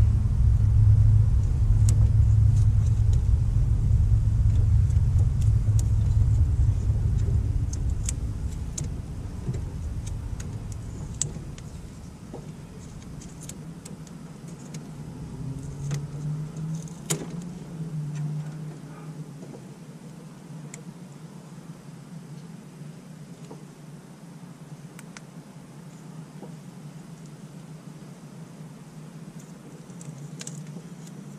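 Low vehicle engine rumble that fades away over the first ten seconds or so, with light scattered clicks and rustling of wires being handled.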